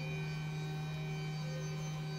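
A steady low electrical hum with fainter, higher steady tones above it.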